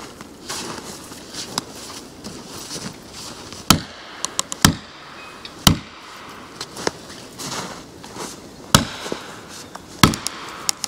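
Felling wedges being pounded into the cut of a hickory tree, a sharp striking knock at each blow. There are a few lighter knocks at first, then heavy blows about a second apart in the middle, another near the end, and smaller clicks between. The tree's dense fibres are still holding it up, so the wedges are driven to tip it over.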